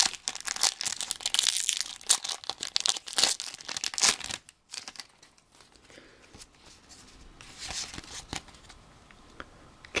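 Foil wrapper of an EX Delta Species Pokémon booster pack being torn open and crinkled, with dense crackling for about the first four seconds. It then goes quieter, with a few scattered rustles later on.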